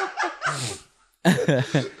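Men laughing in short, breathy bursts, broken by a brief pause about a second in.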